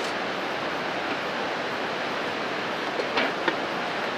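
Steady rushing of a river running high close by, an even noise without pauses. Two light knocks come near the end.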